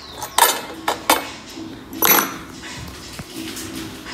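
Small metal hardware (a screw and washer) clicking and clinking against the motorcycle's under-seat frame as it is handled, three sharp clicks, the loudest about two seconds in with a short metallic ring.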